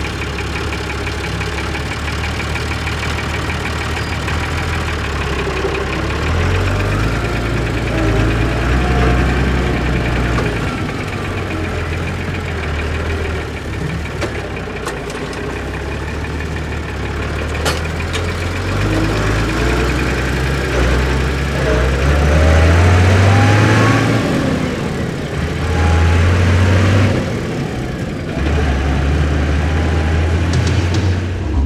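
Massey Ferguson 3085 tractor's diesel engine running, its note rising and falling several times as the tractor moves off under load with the folded rotary tedder.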